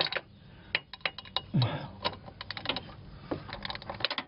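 Long extendable 3/8-inch-drive ratchet clicking as a tight bolt is worked loose, a run of quick, irregular clicks.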